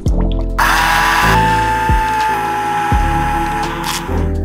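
Immersion (stick) blender motor running with a steady whine while blending tomato sauce in a pot. It starts about half a second in and cuts off just before the end, over background music.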